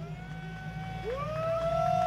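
Rally car engine running with a steady low rumble. About a second in, a high-pitched tone rises, holds, and falls away again just after.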